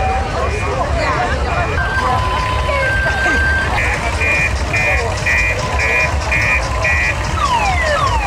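Electronic alarm-like beeping in short pulses, about two a second, loudest in the second half, over the chatter of a street crowd; near the end come a few falling pitch sweeps.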